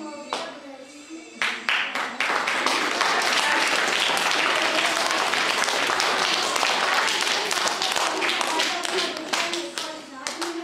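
Audience applauding, many hands clapping together; it starts about a second and a half in and dies away near the end.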